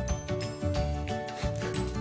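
Background music with sustained melody notes over a pulsing bass and a steady beat.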